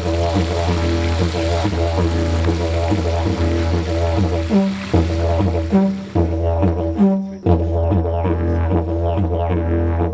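Didgeridoo playing a steady low drone with a rhythmic pulsing pattern. The drone breaks off briefly three times around the middle.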